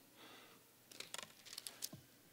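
Near silence with a faint rustle and a few small, quiet clicks close to the pulpit microphone, the kind made by handling a Bible's pages or by the mouth before speaking.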